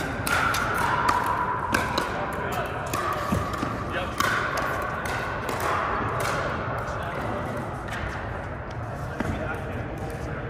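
Pickleball paddles striking the ball and the ball bouncing on the court, a run of sharp, irregularly spaced hits, over a background of people's voices.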